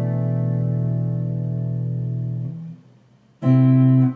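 Electric guitar on a clean tone, a four-note chord voiced in stacked fourths ringing until it is damped about two and a half seconds in. After a brief silence a new chord is struck near the end and rings.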